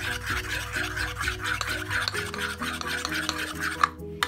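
A metal spoon stirring thin batter in a bowl with quick, even strokes, over background music.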